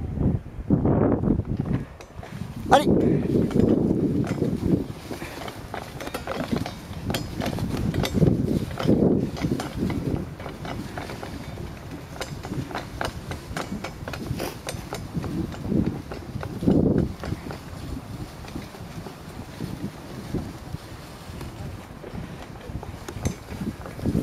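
Dogsled moving over snow behind a pair of sled dogs: runners scraping and crunching along the packed trail, with wind on the microphone. A musher calls "allez" once, about three seconds in.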